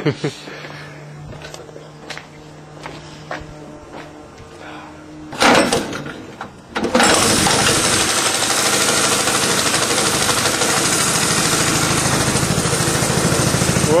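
A 100cc petrol go-kart engine being started: a short loud burst about five and a half seconds in, then it catches about seven seconds in and runs loudly and steadily with a fast, even beat.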